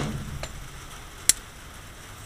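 Glock pistol shot echoing and dying away, followed by two small clicks, a faint one about half a second in and a sharper one just past a second.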